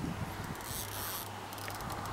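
Spinning reel being cranked against a hooked sturgeon, its gears whirring, with fast light clicks from about halfway.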